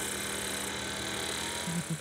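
Steady machine hum with a high hiss, part of which drops out about a third of the way in.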